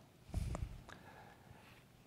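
A pause in a man's speech: quiet room tone, with one short, soft low noise about half a second in.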